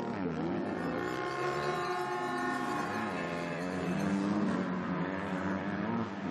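Two motocross bikes revving hard over a jump close together, engine pitch rising and falling as the riders blip the throttle, held high for a second or two in the middle.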